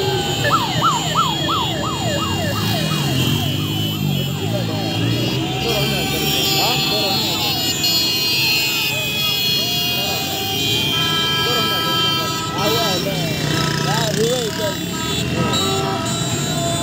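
A siren-style car horn wailing in quick rising-and-falling sweeps, about three a second, for the first few seconds. About eleven seconds in, a steady car horn blast lasts about two seconds. Shouting crowd voices and car engines run underneath.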